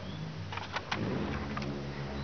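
A low engine hum whose pitch shifts about a second in, with a few faint clicks.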